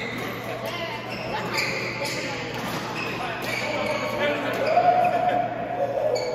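Sports shoes squeaking sharply and repeatedly on a badminton court floor in a large echoing hall, with people's voices; a voice is loudest near the end.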